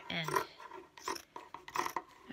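Fabric scissors cutting through several layers of a folded cotton-knit t-shirt, a run of short rasping snips one after another.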